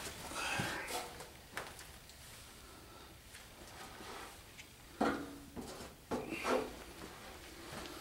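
Faint handling and shuffling noises from someone climbing around a truck frame, with a sharp knock about five seconds in and a short low voice sound, a grunt or mumble, about a second later.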